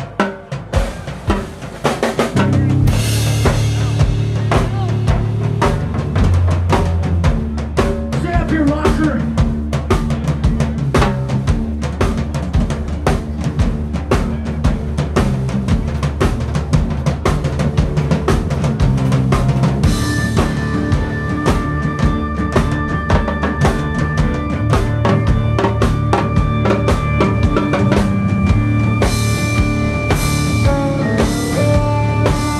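Live band with drum kit, bass guitar and percussion starting a song. A few scattered hits come first, then the full band comes in about two seconds in with a busy drum groove and a steady bass line. Held higher notes join around two-thirds of the way through.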